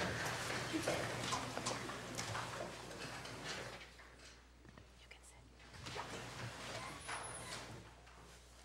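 Faint murmur of low voices and whispering, with scattered small clicks and rustles; it falls quieter about halfway through.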